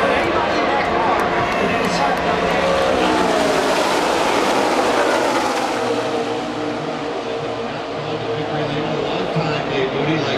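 A pack of NASCAR Cup stock cars with V8 engines running at full speed past the grandstand. The engine noise builds to a peak about four to five seconds in, with the pitch falling as the cars go by, and then settles into a steadier, slightly quieter drone.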